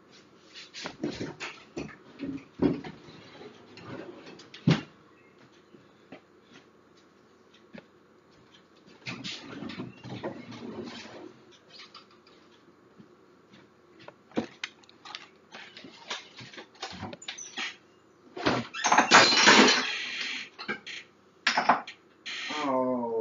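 Kitchen handling sounds: scattered knocks, clicks and clatter of things being moved and cupboard doors being worked, with a louder rushing noise lasting about two seconds near the end.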